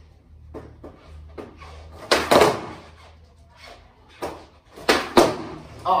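Skateboard tail popped against a wooden floor, with the board's wheels knocking back down: a sharp crack about two seconds in, and two more cracks in quick succession near the end. The pop is the snap that kicks the board up for an ollie.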